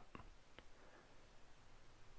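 Near silence: room tone, with two faint ticks in the first second.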